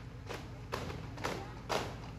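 Daff frame drums beaten in a steady rhythm, about two strokes a second.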